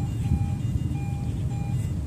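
A metal detector's electronic beeps: about three short beeps at one steady pitch, with a low rumble underneath.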